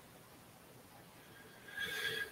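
Quiet room tone, then near the end a brief high-pitched squeak lasting about half a second.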